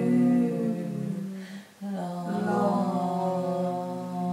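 Three voices holding long, overlapping sung tones together in an unaccompanied chant. They fade out briefly about one and a half seconds in, then come back in.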